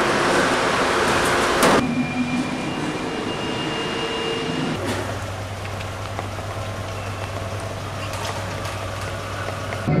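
Steady mechanical vehicle noise in abruptly cut sections. A loud rushing noise stops suddenly about two seconds in. It gives way to a quieter drone with a thin high whine, and from about five seconds a steady low hum like an idling car engine.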